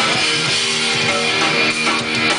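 Hardcore punk band playing live: electric guitars holding steady chords, with a short stretch without vocals.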